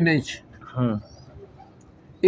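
Domestic pigeons cooing briefly.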